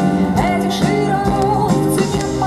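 Live band performing a song: a woman singing lead over electric guitar and a steady beat.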